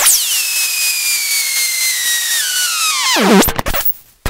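Electronic noise music: a loud high tone with several overtones drops sharply, slides slowly lower for about three seconds, then plunges to a low pitch and breaks off, over a hiss.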